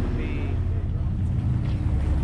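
Sportfishing boat's engine running with a steady low rumble and a steady hum.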